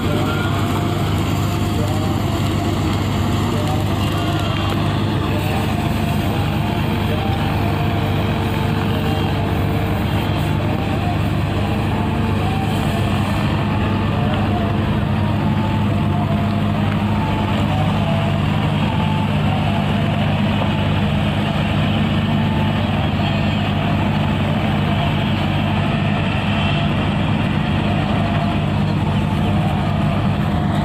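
Heavy construction machinery engine running steadily: a constant low drone that neither rises nor falls, with voices faintly underneath.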